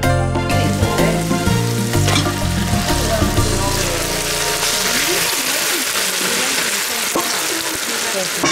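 Onions and tomatoes frying in oil in a steel pot, sizzling loudly as a wooden spatula stirs them and whole mackerel are tipped in. Background music plays under it and fades out about halfway through.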